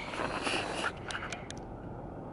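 Rustling and a few small sharp clicks from a handheld camera being moved and zoomed, over the low rumble of a car cabin in traffic.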